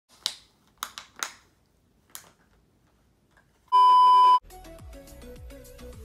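A dog chewing a plastic bottle, with a few sharp plastic crackles in the first two seconds. Just before four seconds in, a loud, steady electronic beep lasts under a second, and then music with a bass beat starts.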